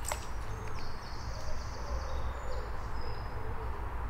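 Riverside ambience: birds calling over a steady low rumble, with high thin notes in the first half and a soft low cooing through the middle. A brief sharp click right at the start.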